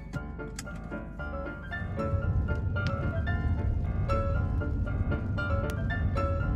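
Background music with piano-like notes. About two seconds in, a low rumble from a car driving on a wet road rises beneath it.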